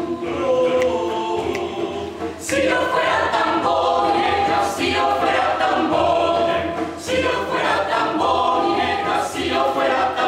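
A mixed choir of women's and men's voices singing together in sustained chords. The sound grows fuller and louder about two and a half seconds in, and the chords swell and ease again through the phrase.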